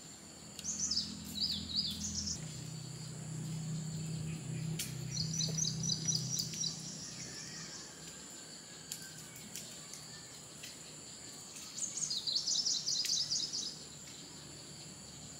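Small songbird calling in three bursts of quick high chirps and trills, about a second in, around the middle, and near the end, over a steady high-pitched insect drone. A low hum runs through the first half.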